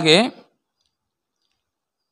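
A man's voice finishes a word into a microphone in the first half second, then near silence.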